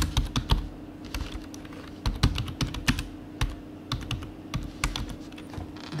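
Typing on a computer keyboard: irregular runs of key clicks with short pauses between them, as a few words are typed.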